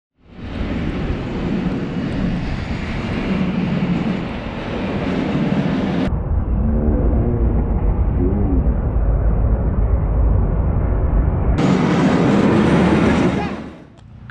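Caterpillar 930M wheel loader's diesel engine working under load while pushing snow with a Metal Pless snow pusher, in edited sections that change abruptly about six and about eleven and a half seconds in. The middle section is muffled, with a heavy low rumble and the engine pitch rising and falling.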